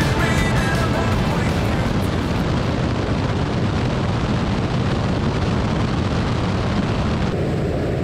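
Waco YMF-5 biplane's radial engine running steadily at cruise in flight, mixed with heavy wind rush on the microphone. Near the end the sound turns abruptly duller and lower.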